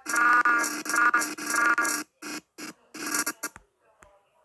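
Playback of the animation's recorded soundtrack: a pitched, voice-like clip in several short phrases, the longest about two seconds, stopping about three and a half seconds in.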